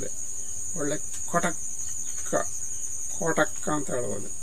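Steady high-pitched drone of insects, unbroken throughout. Short spoken phrases from a man's voice come in over it about a second in and again near the end.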